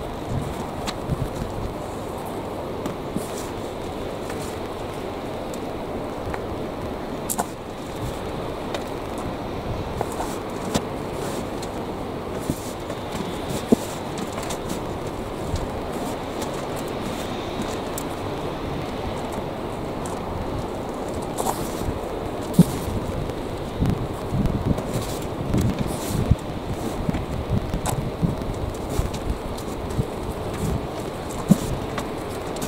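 Loose potting compost rustling and crumbling as gloved hands sift through it in a metal wheelbarrow, with scattered small knocks and clicks that come more often near the end. A steady background noise runs underneath.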